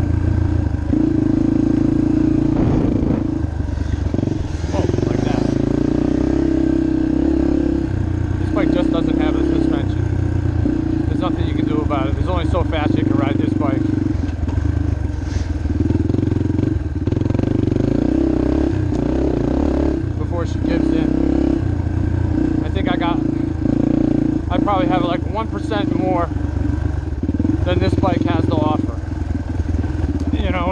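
Yamaha TT-R230 dirt bike's air-cooled single-cylinder four-stroke engine running hard on a trail. The note holds steady at speed and dips briefly every few seconds as the throttle is rolled off.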